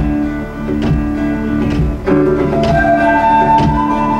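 Live folk band instrumental break: acoustic guitar strumming chords over upright bass and a kick drum. A high woodwind melody comes in about halfway through.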